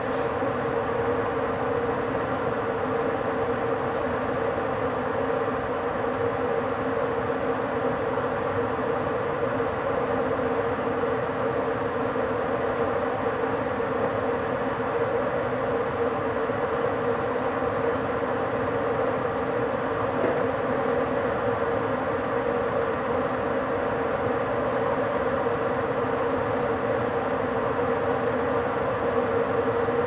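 Electric intercity train running steadily at about 80 km/h: an even rolling rumble of wheels on track with a constant mid-pitched hum over it.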